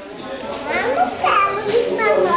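A young boy's voice making high-pitched vocal sounds, starting about half a second in.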